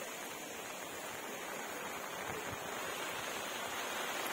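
Steady hiss of heavy rain falling.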